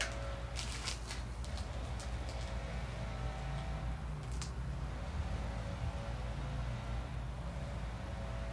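A few short clicks and clinks from adjustable dumbbells being picked up, bunched together about a second in, then one more about four and a half seconds in, over a steady low rumble.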